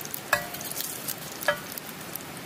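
Bacon sizzling and crackling in a cast iron grill pan, with two sharp, ringing clinks of a steel spatula against the pan a little over a second apart.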